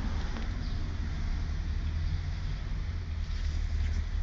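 Steady low rumble inside a car's cabin: engine and road noise as the car drives.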